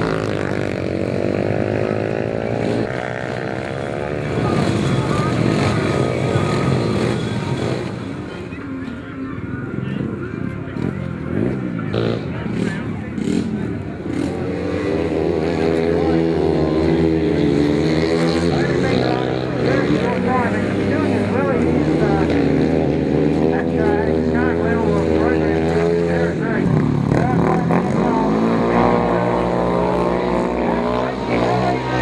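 Several motorcycle engines running together, idling with their pitch rising and falling as they are revved, busier over the second half.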